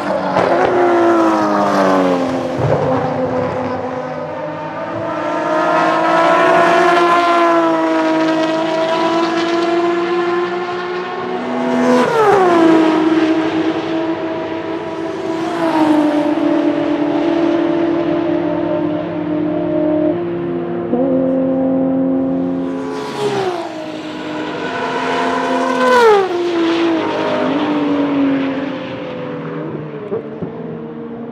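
BMW 3.0 CSL Group 2 race cars' 3.2-litre straight-six engines passing at full speed several times, the pitch climbing under acceleration and dropping sharply at gear changes and as the cars go by.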